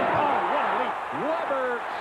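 A man's voice, the TV commentator, over steady arena crowd noise during live basketball play.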